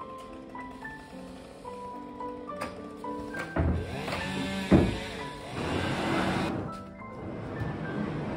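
Background music, and about halfway through a wheeled furniture dolly carrying a heavy wooden desk rolls into a moving container: a rumble of casters, a sharp thump as it bumps in, then more rolling and scraping that stops about a second before the end.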